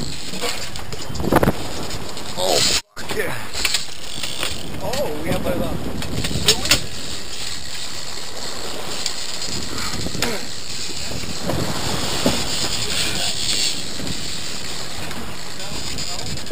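Steady rushing noise of wind and sea on an offshore fishing boat, picked up by a hat-mounted camera's microphone, with muffled voices now and then. The sound cuts out completely for a moment about three seconds in.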